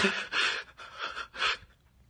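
A man crying, taking about three short, gasping sobbing breaths after a word.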